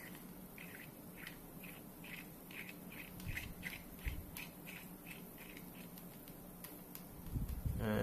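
A 6mm CS-mount lens being screwed into the threaded mount of a Raspberry Pi High Quality camera by hand, its threads giving faint, short squeaky scrapes about three times a second with each twist. There is a soft thump about four seconds in.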